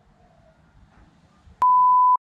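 Faint room tone, then about one and a half seconds in a loud, steady, single-pitched beep starts abruptly: an edited-in censor bleep tone, lasting about half a second.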